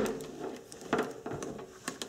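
Faint handling of multimeter test leads and probes, with two light clicks about a second apart.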